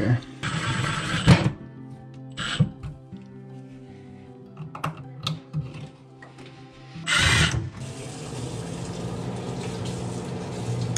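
Handling noises of the turntable motor and its cover panel being refitted underneath a microwave: short scrapes and clicks, with a louder rattle about seven seconds in. From about eight seconds in, the microwave runs with a steady low hum.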